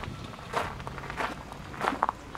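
Footsteps on a dry gravel-and-dirt surface, three even steps about two-thirds of a second apart.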